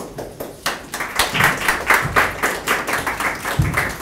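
Audience applauding, swelling about a second in and tapering off near the end, with a low thump just before it fades.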